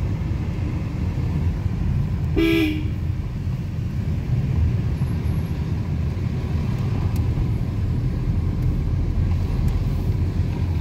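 Steady engine and tyre rumble heard from inside a moving car's cabin, with one short car-horn honk about two and a half seconds in.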